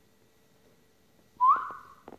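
A person whistling to call a puppy: one whistle, about a second and a half in, that sweeps quickly up in pitch and then holds steady.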